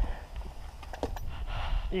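An RC buggy being handled by hand: a click at the start and a faint tick about a second in, over a steady low rumble.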